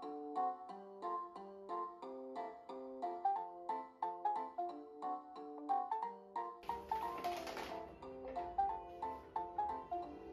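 Background music: a light melody of evenly paced, bell-like mallet notes. A short burst of hiss comes in about seven seconds in, and a low background rumble stays after it.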